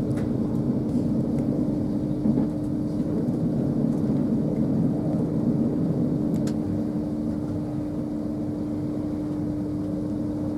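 Cabin noise inside an LNER Class 801 Azuma train on the move: a steady running rumble of wheels and body, with a constant hum under it.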